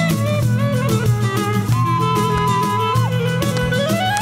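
Albanian popular folk music played by a band: an instrumental passage with an ornamented lead melody over a steady bass and a regular beat. The melody holds one long note near the middle that bends down at its end.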